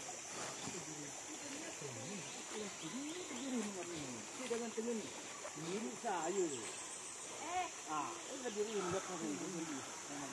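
A steady high-pitched drone of forest insects, with faint voices of people talking at a distance over it through most of the clip.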